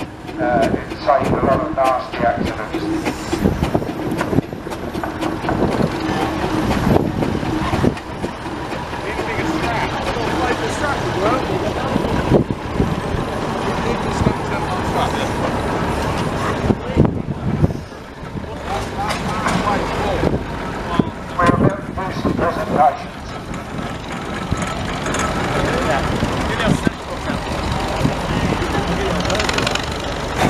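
A steam road roller running close by, with indistinct voices of people around it.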